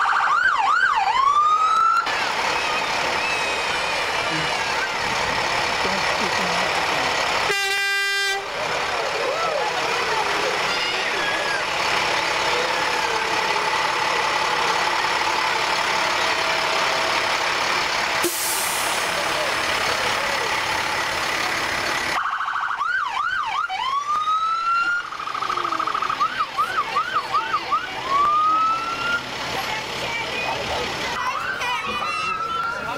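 Fire engines passing with their electronic sirens sounding in short rising whoops and a fast warbling yelp near the start and in the last third. A single horn blast of about a second sounds around eight seconds in.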